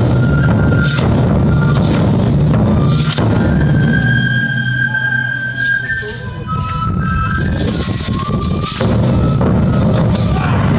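Japanese folk festival music for a horse dance: a high flute holds long notes, stepping down in pitch, over dense drumming. The drumming thins out for a couple of seconds in the middle and comes back in full near the end.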